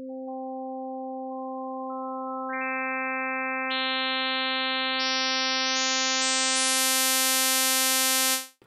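Alchemy additive synthesizer holding one note that starts as a plain sine wave. Harmonic partials are stacked on top in steps, a few at a time and then many in quick succession near the end. The tone grows steadily louder and sharper, closer to a saw wave.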